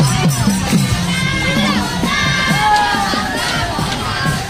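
A group of voices shouting and chanting together over khol drums beaten in a steady rhythm, the drum strokes dropping in pitch.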